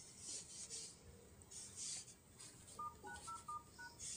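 Phone dialer keypad tones: a quick run of about five short two-tone beeps in the last second or so, whose pitches fit the keys *#0*# being entered. Soft rustling bursts run throughout.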